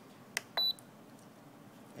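Spektrum DX6i transmitter's roller button pressed: one sharp click, then a single short high beep from the transmitter just after it as the menu changes.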